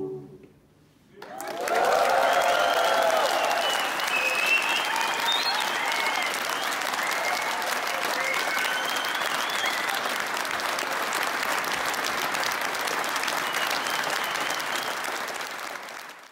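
After a second of near silence, a theatre audience bursts into applause and cheering, with shouts and whoops over the first few seconds; the clapping continues steadily and fades off at the end.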